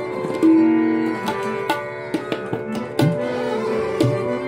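Hindustani thumri accompaniment: tabla strokes keeping a steady rhythm under held harmonium notes, with sarangi. A deep, pitch-bending bass stroke of the tabla's left-hand drum comes about three seconds in.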